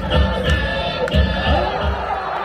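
Baseball cheering music in the stands: a steady beat about three times a second under a melodic tune, with crowd noise.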